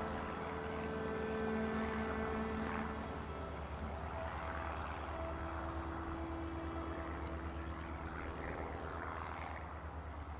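A small Cessna plane's engine and propeller droning steadily, with held music notes fading out over the first few seconds.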